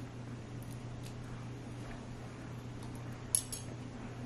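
A steady low electrical hum, with a few faint ticks and a quick metal clink of a spoon, the loudest sound, a little over three seconds in.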